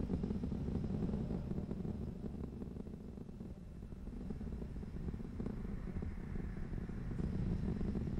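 Steady low rumble of the Atlas V rocket's engines in flight, easing slightly in the middle and building again near the end.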